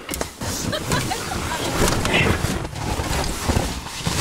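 Inflatable boat being pushed and crammed into a car's cabin: its tubes rub and scrape against the seats and trim, with short knocks throughout as someone climbs in beside it.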